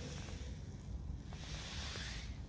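Faint low rumble of wind and handling noise on the camera's microphone, with a short hiss near the end.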